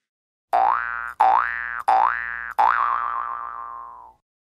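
Cartoon 'boing' sound effect: four springy notes in quick succession, each sliding upward in pitch, the last one wobbling as it fades away.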